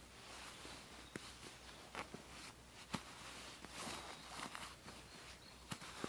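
Faint rustling and scrunching of the Snugpak Osprey sleeping bag's fabric as it is pushed down into its stuff sack, with a few soft ticks about a second apart.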